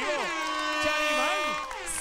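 A horn-like sound effect: a chord of several steady tones held for about a second and a half, then cutting off, marking a cash prize win. It plays over excited shouting voices.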